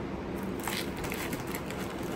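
A plastic chip bag crinkling as it is picked up and handled, with a few light crackles.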